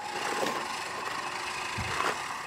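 Manual push reel mower being pushed over gravel and onto grass, its spinning reel and wheels making a steady whirring noise.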